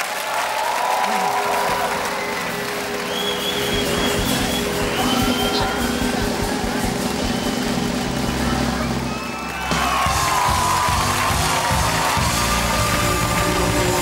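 Studio audience clapping and cheering over music, loud and steady throughout. Just before ten seconds in there is a brief dip, then a louder stretch with a steady low beat.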